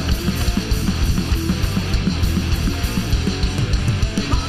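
A heavy metal band playing live: distorted electric guitars, a bass guitar and a Tama drum kit keeping a steady, dense beat.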